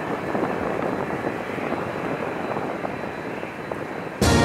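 Twin-engine jet airliner's engines running on the runway, a steady rushing noise.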